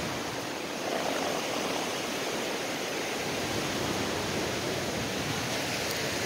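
Steady rush of a river's flowing water, an even noise with no breaks.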